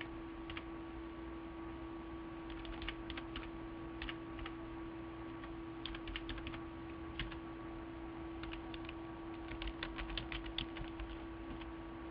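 Computer keyboard typing: irregular short runs of keystrokes as a number is keyed in, the densest run near the end. A steady low hum sits underneath.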